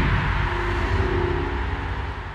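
Logo sting sound effect: an even rushing noise over steady low tones, slowly dying away.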